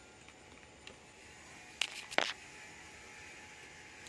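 Quiet background with a few brief rustles and taps, three sharp ones close together about two seconds in, from hands handling plastic orchid pots and leaves.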